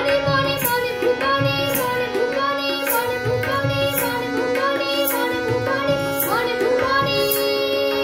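A boy singing a Bengali folk-style song, accompanied by tabla over a steady held drone, with a light high percussion stroke falling on the beat.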